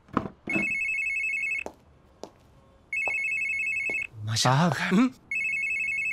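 Mobile phone ringing: a high electronic ring tone in three bursts of a little over a second each, separated by short pauses. A man gives a brief vocal exclamation between the second and third rings.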